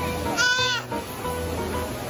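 A toddler's short, high-pitched wavering squeal about half a second in, over steady background music.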